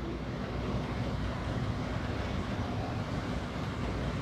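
Steady low rumble and hum of room background noise, picked up by the lectern microphone while nobody speaks.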